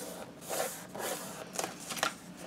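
Faint rustling and light scraping of paper being pressed and slid by hands on a plastic scoring board, with a few soft taps.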